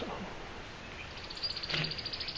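Faint steady background hiss, then a rapid, evenly spaced high chirping trill from a small bird in the background, starting about a second and a half in.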